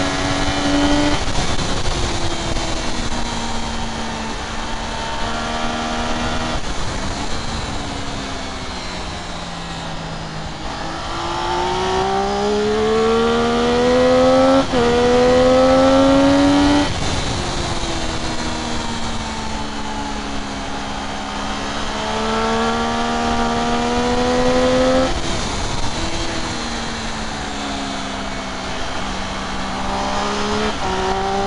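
Triumph Daytona 675 three-cylinder engine heard onboard at racing speed, with wind rushing over the microphone. The pitch steps down over the first several seconds as the rider shifts down into a corner. It climbs from about ten seconds in, with a quick upshift midway, drops sharply again around seventeen seconds, then climbs and drops once more near the end.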